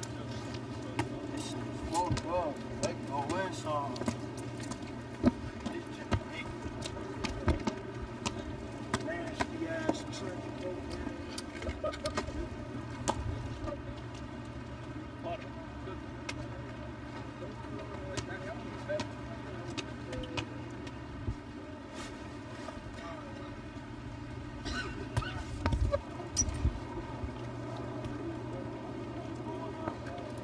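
Faint, indistinct voices of people talking at a distance over a steady low hum, with scattered light knocks.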